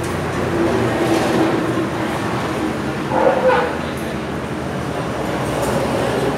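Loud, steady rumble of a passing vehicle, with a short, sharp louder sound about three seconds in.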